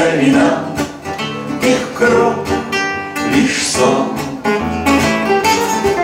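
Two acoustic guitars playing a song accompaniment together with singing voices.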